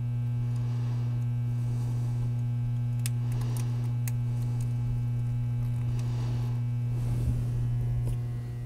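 Steady electrical mains hum, low and even, with a few faint clicks of small parts being handled about three to four seconds in.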